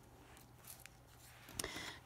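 Quiet room with a few faint rustles and light taps of construction paper being handled and laid flat on a table; the clearest comes a little past one and a half seconds in.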